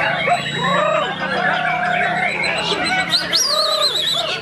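Many caged songbirds singing at once in a dense tangle of whistles and warbles, with a white-rumped shama (murai batu) among them. About three seconds in, a loud high whistle rises and breaks into a fast quavering trill.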